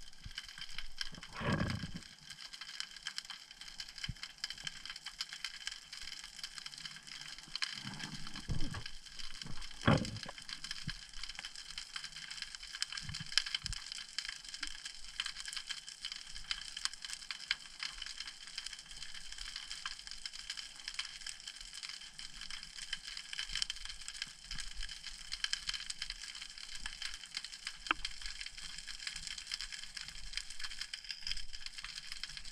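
Underwater ambience over a seagrass bed: a dense, steady crackle of snapping shrimp clicking. A few dull thuds come about a second in and again around eight to ten seconds in.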